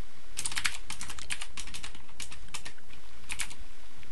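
Computer keyboard typing: quick runs of keystrokes with short pauses between them.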